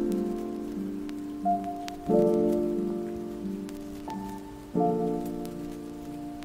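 Lofi hip-hop instrumental: mellow keyboard chords struck about two seconds in and again near five seconds, each left to ring and fade, with single higher notes in between, over a light crackling, rain-like texture.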